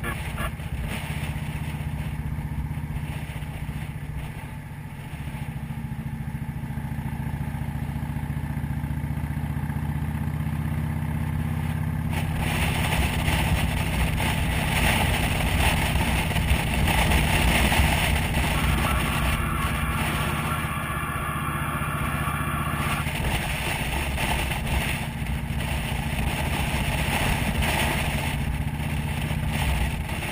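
A motorcycle engine running steadily at road speed, heard from on the bike, with wind rushing past. The wind hiss gets louder about twelve seconds in.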